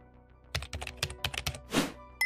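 Computer keyboard typing sound effect: a quick run of key clicks starting about half a second in, ending in a short louder rush of noise near the end, over soft background music.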